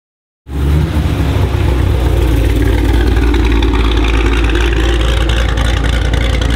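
Supercharged V8 of a Hennessey Exorcist Camaro ZL1 1LE with headers, cams and a full straight-pipe exhaust, running loud and steady with a deep rumble as the car rolls slowly in at low speed. The sound starts suddenly about half a second in.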